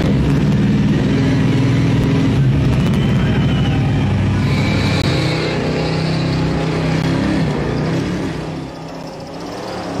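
Supercharged, alcohol-burning 8.2-litre Chevrolet V8 held at high, steady revs during a burnout, heard from inside the ute's cabin. About seven and a half seconds in the revs fall away and the sound drops.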